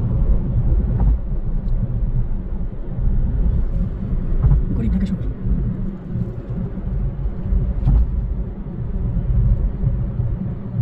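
Low, steady road rumble of a car driving at highway speed, heard inside the cabin, with a few faint clicks.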